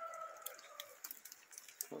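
Faint scattered drips and ticks of rainwater in a wet garden, with a faint held tone in the first half-second.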